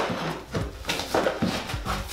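Pry bar scraping and knocking as it is worked under glued-down vinyl flooring to tear it off the subfloor. There are a few short knocks about a second apart.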